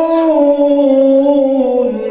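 A man's voice holding one long melodic note into a microphone in a chanted religious recitation, rising slightly at first, then sinking slowly and ending near the end.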